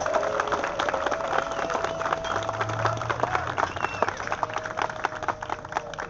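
A crowd applauding, a dense patter of many hands clapping, with a steady held tone running underneath for much of it.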